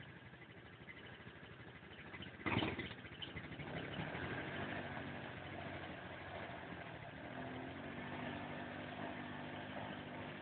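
A quad bike's engine runs at low speed as the machine crawls up a muddy, rutted trail. The engine comes through more clearly from about four seconds in and holds a fairly steady note. A single sharp thump stands out about two and a half seconds in.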